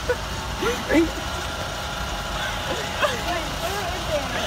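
Short bursts of laughter and indistinct voices from a few people over a steady low rumble.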